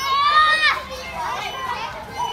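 Children shouting and calling out as they play. A high-pitched child's shout sounds for about the first half second or more, followed by quieter scattered children's voices.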